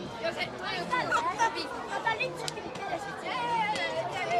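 Several players' voices calling and shouting on the pitch at once, overlapping, in a large indoor football hall.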